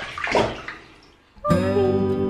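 Bathwater splashing around a baby in a bath for about a second, then soft background music with sustained plucked-string notes starting about one and a half seconds in.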